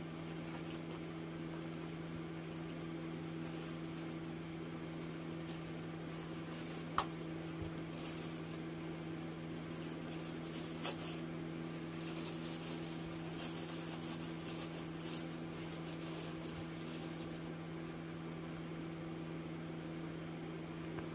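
Light crinkling and rustling of a paper and plastic wrapper being picked open by hand, strongest in the second half, over a steady low electrical hum. A single small click about seven seconds in.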